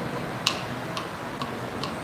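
A run of short, sharp clicks, about two a second, over a steady low background hum.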